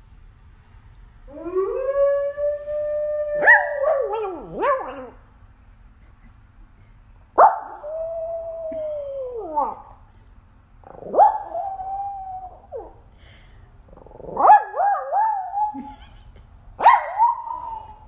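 A recorded wolf howl plays from a smart speaker as one long call that rises and then holds. A small dog then answers with about four howls of its own, each starting suddenly and lasting one to two seconds.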